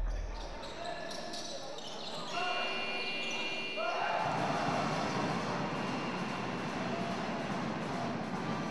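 Live basketball game sound in an echoing gym: spectators' and players' voices calling out, with a basketball bouncing on the wooden court.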